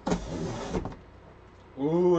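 Packing material being handled inside a cardboard shipping box: one short, noisy scrape lasting just under a second.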